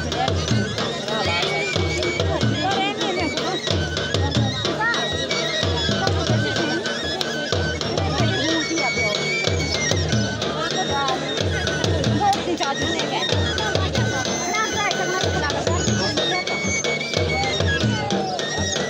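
Live Himachali Churahi folk dance music: drums beat a steady rhythm under a wind instrument playing long held high notes, with crowd voices mixed in.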